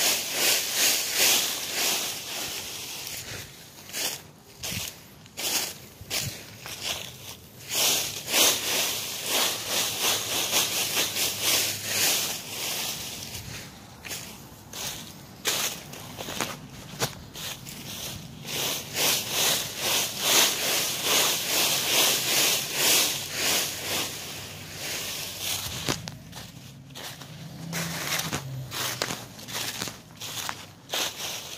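Dry fallen leaves rustling and crunching in irregular bursts as they are scooped up and walked through, with footsteps in the leaves.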